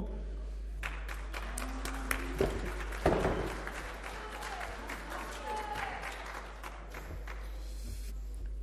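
Audience applause in a hall, many hands clapping in welcome, starting about a second in and thinning out towards the end.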